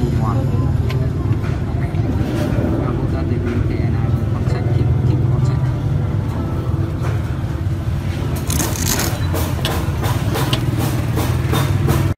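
Street-market ambience: a steady low hum of motor traffic under background voices. In the last few seconds it is joined by a run of sharp clicks and scrapes.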